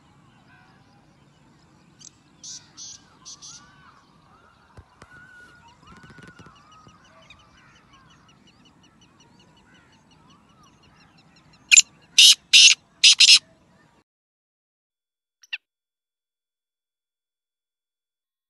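Male black francolin calling: four loud, harsh, grating notes in quick succession over about a second and a half, past the middle, after a fainter set of similar notes about two seconds in. Faint chirps of other birds in the background.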